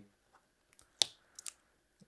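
Card stock being handled as the top layer of a layered card is lifted away: one sharp click about a second in, then two fainter ticks.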